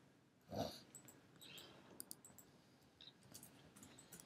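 Near silence with a few faint keyboard and mouse clicks scattered through it. There is one short soft noise about half a second in.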